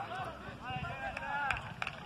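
Distant shouted voices calling across the pitch, faint under a low handling rumble on the phone's microphone. Two sharp knocks come near the end.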